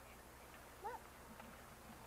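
Near silence with a faint steady low hum, and a child saying one short word, 'Look', about a second in.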